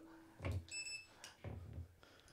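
A shock collar gives a short, high electronic beep about three-quarters of a second in, over a faint steady hum. Soft knocks come from the collar being handled.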